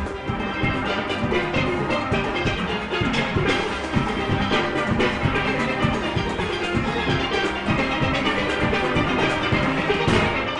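A full single-pan steel orchestra playing: many steelpans sounding together in a fast, busy arrangement over a steady beat.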